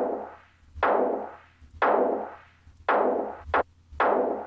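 A sampled snare drum ('Black Beauty' snare recorded in a large room) triggered from Ableton Live's Sampler with its shaper distortion turned up. It plays about one hit a second, each hit with a decaying room tail, and two hits come in quick succession near the end.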